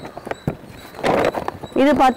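Green plastic grow bag rustling and crinkling as it is unfolded and opened out by hand, with a few sharp crinkles and a louder rustle about a second in. A woman starts speaking again near the end.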